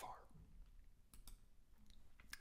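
Near silence: room tone with a few faint clicks a little over a second in and again near the end.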